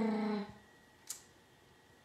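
A woman's drawn-out hesitation hum while she searches for a name, ending about half a second in; then a quiet room with one faint click about a second in.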